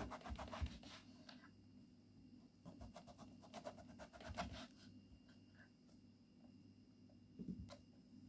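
Faint sound of a knife cutting through eggplant onto a wooden board, in two runs of short scratchy strokes, with a soft knock near the end.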